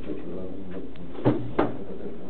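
Muffled, indistinct voices in a small room, with two sharp knocks or clicks about a second and a half in.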